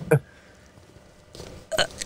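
A single short, throaty vocal sound from the reader, falling in pitch, then a pause of faint room tone before her voice picks up again near the end.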